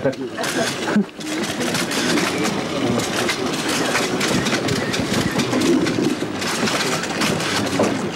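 Several people talking at once, a continuous murmur of voices, with many quick irregular clicks running throughout.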